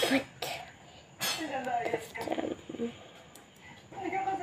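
A young girl coughs twice in quick succession, then speaks indistinctly in a child's voice for about a second and a half.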